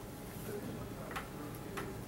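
Two short, sharp clicks about half a second apart, a little over a second in, over a steady low room hum.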